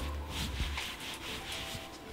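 Hands rubbing and brushing over a quilted polyester blanket, a soft fabric rustle in several short strokes.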